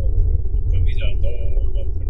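Steady low rumble of a car's road and engine noise heard from inside the cabin while driving at highway speed, with faint indistinct talking over it.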